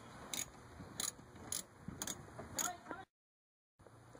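Handling noise from a handheld camera being swung around: a few light clicks and rubs, roughly one every half second, then the sound cuts out completely for under a second near the end.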